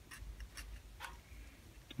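Knife blade scraping excess black caulk off wooden planking: a few faint ticks about half a second apart.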